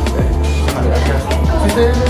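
Music with a steady beat and a strong bass line, with voices talking underneath.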